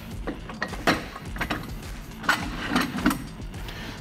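Irregular metal clicks and knocks as a lift-off canopy leg is fitted into its mounting socket on the canopy's rear corner.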